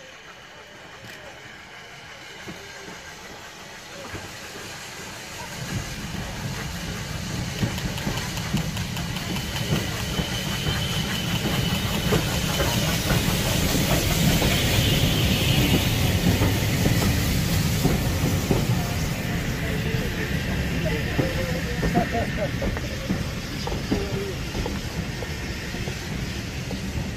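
Steam tank locomotive drawing a passenger train in and past at low speed with a hiss of steam, growing louder about six seconds in. Its coaches then roll by close up with a steady rumble of wheels on the rails.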